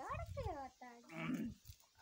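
A person's wordless vocal sounds: short pitched calls that slide up and down, with a breathy burst just past the middle.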